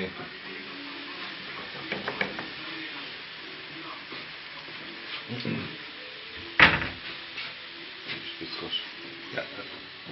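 Dödölle potato dumplings frying in fat in a nonstick pan, a steady gentle sizzle: they are slow to brown. A sharp knock about six and a half seconds in, with a few lighter clicks around it.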